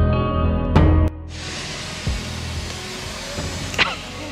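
Acoustic guitar music that cuts off about a second in, followed by a steady hiss.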